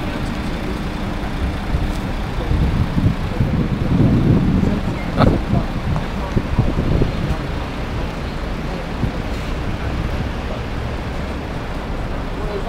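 City street traffic: a steady low rumble of engines and tyres from passing cars, buses and a coach, swelling as a vehicle passes a few seconds in, with one short sharp click about five seconds in.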